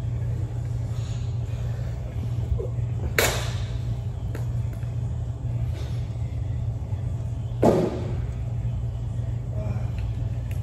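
Steady low rumble of gym room noise, with two short, sharp noisy sounds about three seconds and eight seconds in, the second the louder.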